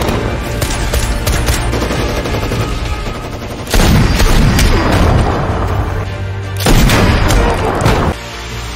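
Rifle gunfire in quick shots, getting louder and denser for a stretch about four seconds in and again near seven seconds, over background music.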